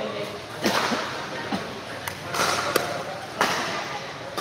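Pickleball paddles striking a perforated plastic pickleball and the ball bouncing on the court: several sharp pocks at uneven intervals.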